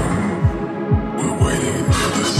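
Electronic dance music driven by a steady four-on-the-floor kick drum, about two beats a second. The upper sounds drop out for under a second mid-way and come back, leaving the kick and bass alone for a moment.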